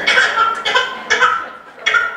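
A one-year-old baby fussing and crying in short, distressed cries, about four in two seconds. The cries are the infant's stress reaction to her mother's unresponsive still face.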